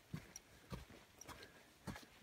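Faint footsteps of a hiker walking uphill on a damp dirt trail, soft knocks roughly every half second.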